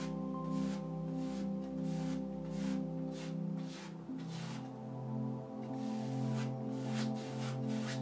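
Soft ambient background music of sustained synthesizer chords, the low notes changing about four seconds in. Over it come short, irregular swishes of a paintbrush scrubbing oil paint onto canvas.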